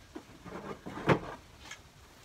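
Handling noise as a cardboard template is held and shifted against a plywood wall: faint rustling and one sharp knock about a second in.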